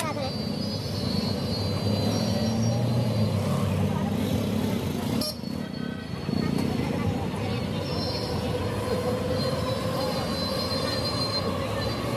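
Busy street background: a steady low traffic rumble with horns and scattered voices. The sound dips briefly about five seconds in.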